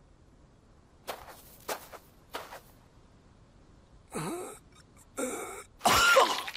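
A badly wounded man's pained vocal sounds: a few short, sharp breaths over near quiet, then strained, groaning gasps in the last two seconds, the loudest just at the end as he coughs up blood.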